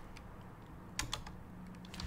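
A few faint computer keyboard keystrokes, scattered clicks with most of them about a second in, as a stock ticker is entered into a search box.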